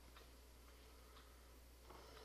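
Near silence: faint room tone with a steady low hum and a few faint ticks about half a second apart.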